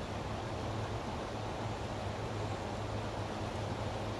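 A river flowing over a rocky bed, heard as a steady, even rushing.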